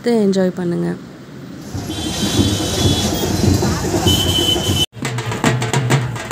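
Hand drums of a street procession beating a quick, even rhythm, coming in suddenly about five seconds in. Before that, a child's voice for a moment, then a few seconds of outdoor crowd and street noise with a high steady tone.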